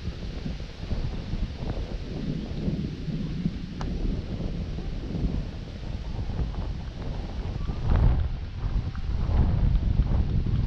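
Wind buffeting the camera microphone: an uneven low rumble that swells and fades, strongest a couple of seconds before the end.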